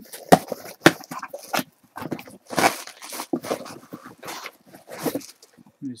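Cardboard package being cut and torn open by hand: a run of irregular rips, scrapes and sharp clicks.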